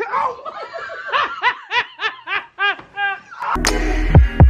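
A woman laughing in a quick run of 'ha-ha-ha' pulses, about four a second. Near the end, electronic music with a heavy beat comes in.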